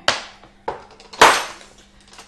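A long plastic rolling pin and a sheet of rolled-out icing handled on a non-stick board: three knocks, the last and loudest a little over a second in.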